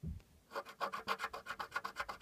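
Latex coating of a scratch-off lottery ticket being scratched off in quick back-and-forth strokes, about eight a second, starting about half a second in after a soft bump.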